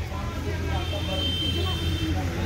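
Indistinct voices of people close by over a steady low rumble, with a thin high steady tone joining about a third of the way in.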